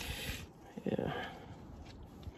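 A man's breathy exhale, then a short wordless murmur about a second in, fading to faint background noise.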